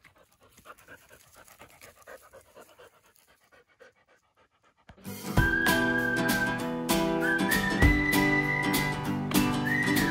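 A border collie panting faintly and rhythmically. About five seconds in, background music starts loudly, with plucked guitar and a high held melody line.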